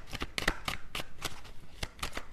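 A deck of tarot cards being shuffled by hand: a quick, irregular run of crisp card clicks.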